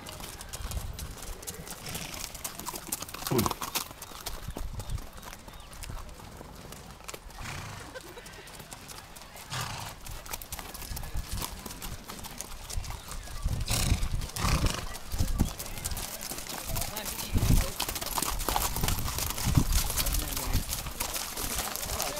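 Hooves of many ridden horses clip-clopping as they walk past on a dirt road, growing louder and denser a little past halfway, with people's voices in the background.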